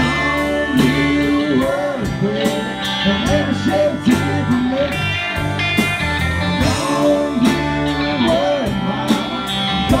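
A live country-rock band playing an instrumental break: a guitar lead with bending notes over bass and a steady drum beat.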